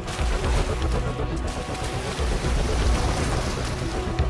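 Movie sound mix of a boat being paddled through a storm at sea: rushing, splashing water and a deep rumble under sustained dramatic music.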